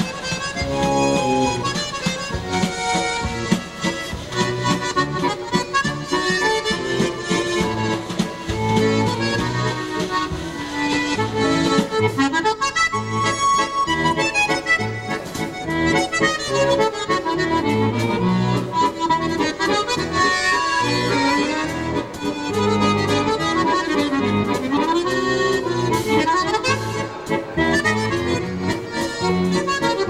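Solo accordion playing a valse musette, a waltz melody over a regular bass accompaniment, without a break.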